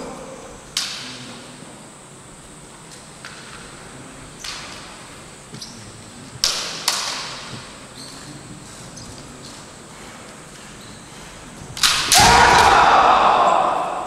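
Kendo bamboo shinai clacking against each other in a few sharp, separate knocks. About twelve seconds in comes a loud clash and kiai shouting lasting over a second, ringing in the hall, as the fencers close in.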